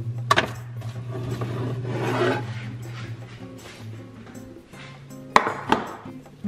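A metal baking tray of chilled cookie dough being handled: a sharp knock as it is taken from the fridge shelf, some rustling, then two sharp knocks near the end as it is set down on a counter, over soft background music.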